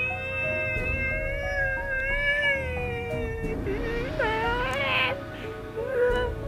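A man wailing in long, high, drawn-out cries like a caterwaul, the later cries sliding upward in pitch, over background music.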